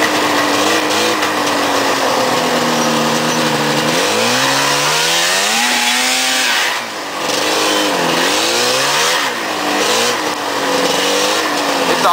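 Fan-cooled two-stroke twin engine of a Yamaha SRV 540 snowmobile under way: running steadily, then revving up about four seconds in, dropping off briefly around seven seconds, and rising and falling with the throttle several times after that.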